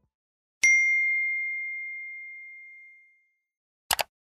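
A single bright, bell-like ding about half a second in: one clear high tone that rings out and fades away over about two and a half seconds. A brief sharp click follows near the end.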